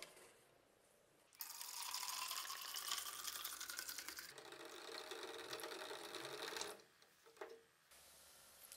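Liquid poured from a plastic bottle into a cut-off plastic bottle holding the knife blade, filling a citric acid bath to darken the steel. The splashing stream starts about a second and a half in, its pitch rising as the bottle fills, changes sound about halfway through, and stops shortly before the end.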